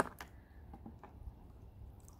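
Faint water sounds of pumpkins being washed with rags in a wagon of water: light dripping and sloshing, with a short click at the start.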